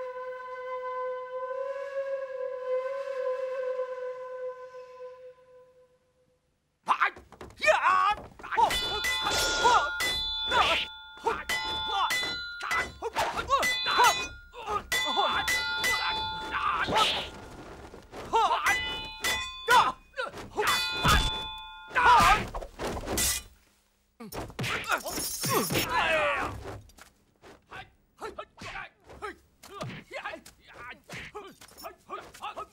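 Fight sound effects: a held, wavering note for about six seconds, then after a short gap a rapid run of blows, swishes and ringing metallic clangs of weapons clashing, loud and in bursts to the end.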